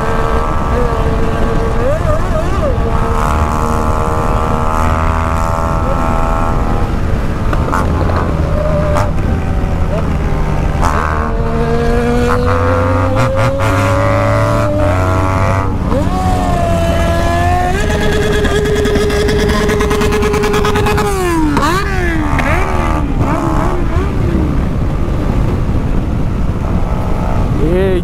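BMW R1200 GS Adventure boxer-twin engine running at highway speed under heavy wind rush, its note rising and falling as the throttle is opened and eased.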